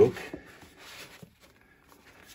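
A book sliding out of a smooth cardboard slipcase: a soft papery scraping rustle for about a second, with a light tap near the middle, then it dies away.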